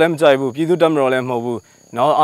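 A man speaking Burmese in a continuous stretch, pausing briefly near the end, with a faint steady high-pitched insect drone behind.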